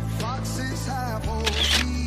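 Background music: sustained bass notes under a wavering melody line, with a short hissing swell about three-quarters of the way through.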